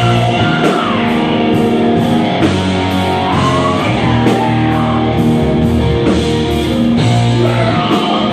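Live rock band playing loud and without a break: electric guitars, bass guitar and a drum kit.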